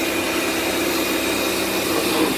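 Kärcher K2 Basic electric pressure washer running steadily, its motor and pump humming over the hiss of the water jet spraying onto a car.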